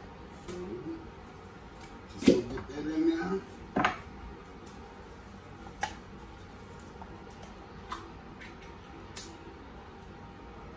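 Sharp metal clicks and knocks of a can of condensed cream soup being handled and tipped out into a stainless-steel mixing bowl. The loudest knock comes about two seconds in, then single lighter taps every second or two.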